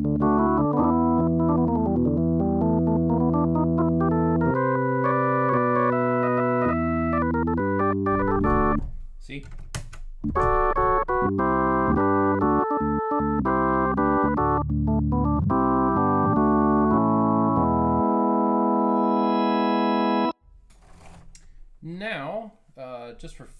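Nord Electro 5D organ played in sustained chords through a Leslie pedal set to its PR-40 tone-cabinet model, so the tone stays steady with no rotating-speaker swirl. The playing breaks off briefly about nine seconds in. The last chord is held and then cuts off suddenly near the end.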